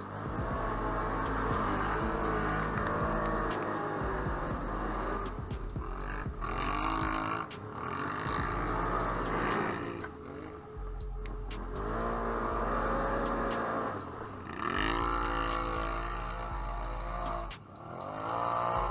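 Can-Am Outlander ATV engine revving hard through deep mud, its pitch rising and falling again and again as the throttle is worked, with mud and debris clicking and spattering.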